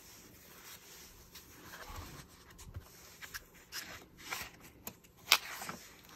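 Faint rustling and handling of paper journal pages as a page is turned, with scattered small clicks and one sharp snap a little after five seconds in.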